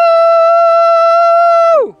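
A man's voice holding one long, loud, jubilant 'aaah' on a single high note, sliding up into it at the start and dropping away just before the end.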